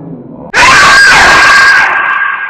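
A sudden, very loud jump-scare scream bursts in about half a second in, with a piercing, steady high pitch. It is held for over a second and drops off near the end.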